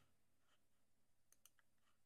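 Near silence, with a few faint mouse-button clicks about a second and a half in.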